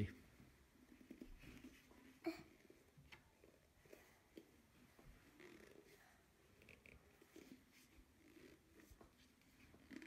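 Plastic squeeze bottle of red craft paint being squeezed, giving faint puffs and small crackles of air with one sharper puff about two seconds in; it sounds empty.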